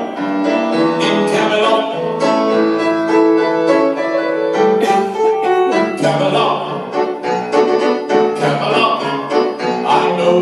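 Live grand piano accompaniment to a Broadway show tune, with a man singing over it into a handheld microphone.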